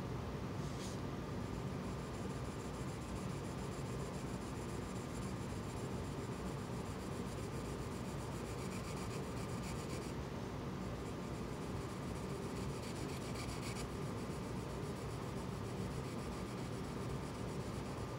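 Green colored pencil shading on paper: a soft, continuous scratching of short strokes, a little louder in a couple of stretches past the middle.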